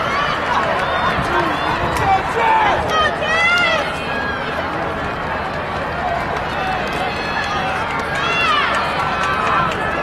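Spectators in the grandstand chattering over an outdoor crowd murmur. Louder shouted calls come about three seconds in and again near the end, cheering on the runners.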